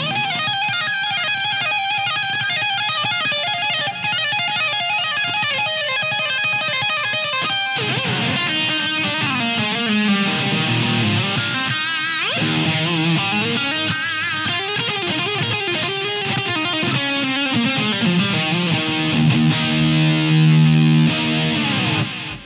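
Electric guitar, a Fender Telecaster, played through IK Multimedia AmpliTube X-GEAR effects pedals. It starts with quick, dense single-note lines, then after about eight seconds moves to lower notes that bend and waver in pitch.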